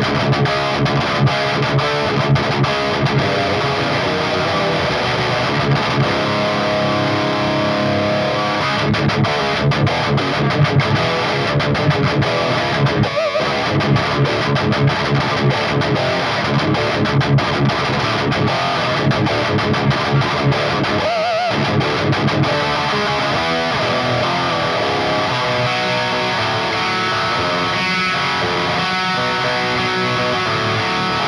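Electric guitar played through a Finch Electronics Scream! tube-screamer-style overdrive pedal: distorted rhythm riffing with chugging, muted strokes. There are two short breaks, about a third and about two-thirds of the way in, and held, ringing chords near the end.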